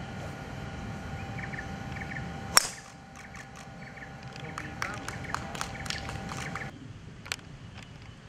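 A golf driver striking a ball off the tee: one sharp, loud crack about two and a half seconds in.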